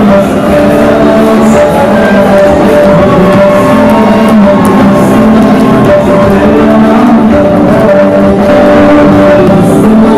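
Loud music with singing, playing continuously at an even level.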